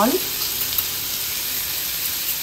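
Diced onion, green bell pepper and cheese cubes frying in a small cast-iron skillet: a steady sizzle.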